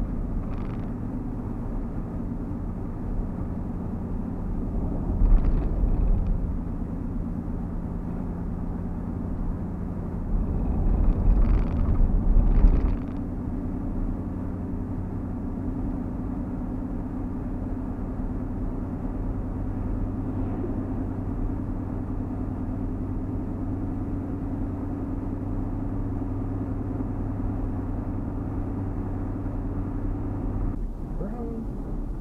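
Engine and road noise heard from inside a truck's cab while it drives: a steady low hum with two louder, rougher stretches, one about five seconds in and one from about ten to thirteen seconds in, after which the engine's tone settles to a new pitch.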